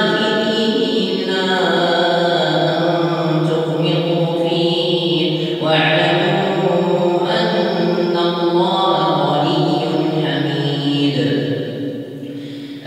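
An imam's melodic chanted recitation in Arabic during the Tahajjud night prayer: one man's voice drawn out in long, sustained phrases.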